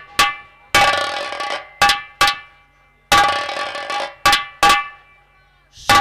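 Bell-like metallic percussion hits in a repeating pattern of two short strikes followed by a longer ringing one, played as a dramatic musical accent. A voice starts in just before the end.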